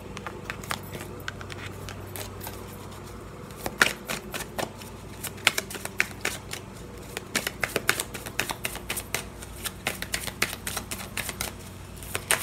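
A deck of tarot cards being shuffled by hand: quick, irregular clicks and flicks of card against card. They are sparse at first and come in denser runs from about four seconds in.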